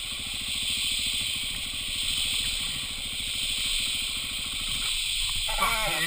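Dirt bike engine running at low revs, a fast even pulsing under a steady hiss, as the bike creeps forward; the pulsing fades near the end. A man laughs in the last half second or so.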